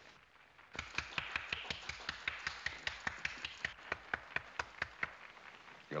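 A thin scattering of sharp hand claps, a few people clapping at about four or five claps a second, starting about a second in and stopping shortly before the end.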